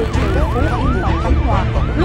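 A fast warbling siren, its pitch sweeping up and down about four times a second, over a steady low rumble.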